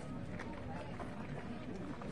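Indistinct background voices of people talking at a distance, with a few faint knocks.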